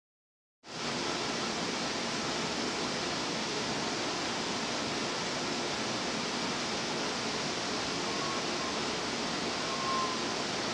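Dead silence, then a steady, even rushing noise cuts in abruptly just under a second in and holds without change.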